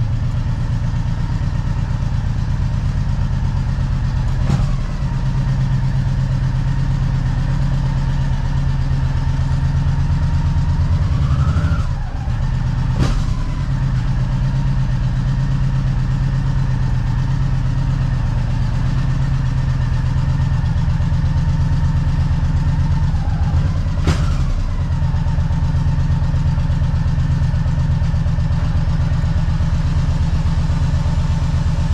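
Motorcycle engine running steadily at low revs, with a brief rise in pitch about ten seconds in. Three sharp clicks stand out over it, spaced several seconds apart.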